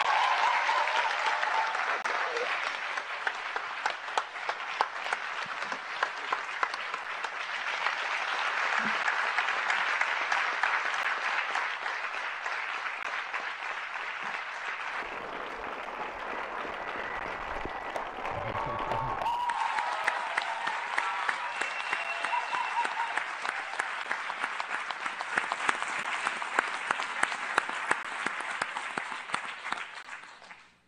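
Sustained audience applause from a hall full of people clapping, with a few voices calling out over it near the start and again past the middle. There is a brief low rumble a little after halfway.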